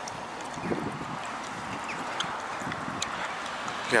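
Footsteps on a paved path: a few light, irregular taps over a steady outdoor hiss.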